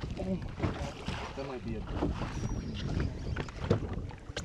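Wind on the microphone and small waves lapping against the side of a boat, a steady low rumble with a few faint knocks.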